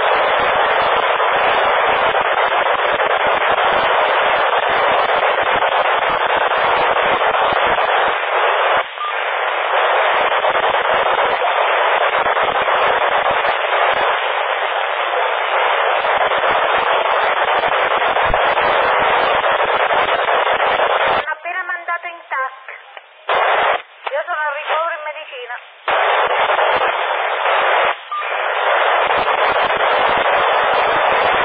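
PMR446 radio receiver on 446 MHz FM with the squelch open, giving a loud steady hiss of static. Just past two-thirds of the way through, for about five seconds, a weak transmission quiets the noise and a faint voice comes through broken up, before the hiss returns.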